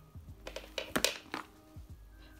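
Faint background music with a few light clicks and knocks, the strongest about a second in, as scissors and craft supplies are picked up off a sketchbook.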